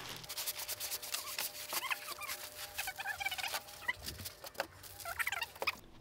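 A floor-standing loudspeaker wrapped in a plastic bag being worked out of its tall cardboard box: dense crinkling of the plastic and rubbing and scraping against the cardboard, with a few short squeaks.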